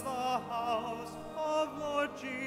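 A solo singer with a wide vibrato sings a slow liturgical chant, holding sustained notes and moving between them, over a steady low accompaniment.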